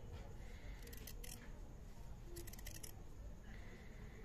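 Scissors cutting slowly through a strip of stiff buckram: faint, crisp snips in a cluster about a second in and again a little after two seconds.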